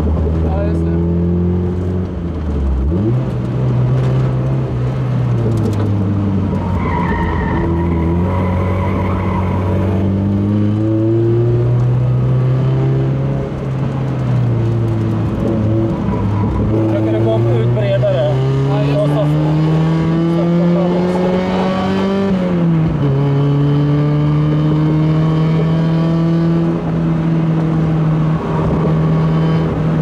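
A Mazda MX-5 Miata NA's four-cylinder engine heard from inside the cabin, driven hard on track: the revs climb and fall repeatedly with throttle and gear changes, with one long climb that drops suddenly about 23 seconds in at a shift. The tyres squeal briefly through a corner around 7 to 10 seconds in.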